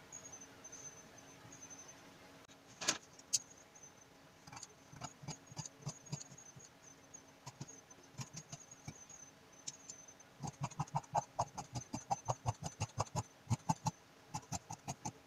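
Tailor's shears cutting through trouser fabric along a chalked line: a quick, even run of snips, about four a second, starting a few seconds before the end. Before that come scattered light ticks and scrapes of work on the fabric, with one sharper click about three seconds in.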